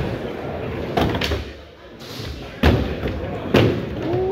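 Skateboard wheels rolling on a wooden mini ramp, with hard clacks and thuds of boards landing on the ramp about a second in, around two and a half seconds in, and again near the end.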